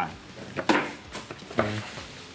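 A bean bag landing with a short thud on a wooden cornhole board, followed by brief exclamations.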